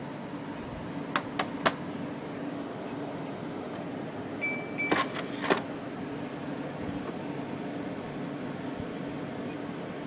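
Steady hum of an old Dell Latitude C810 laptop running, most likely its cooling fan. Three sharp clicks come a little after a second in, with a couple more around the middle, where there is also a short high beep.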